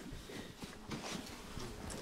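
Quiet room tone with faint rustling and a few small clicks and knocks, as someone settles into a seat and handles equipment.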